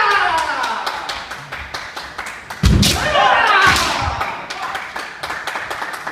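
Kendo bout: a fighter's drawn-out kiai shout falls away at the start; about three seconds in a foot stamps hard on the wooden floor with a sharp crack of a bamboo shinai strike, followed by another long, falling shout and a second thud. Light clicks of bamboo swords knocking together run throughout.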